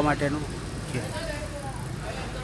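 A man's voice ends a word, then a pause filled with steady low background noise.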